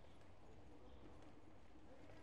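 Faint footsteps on cobblestones, with distant voices murmuring in a quiet street.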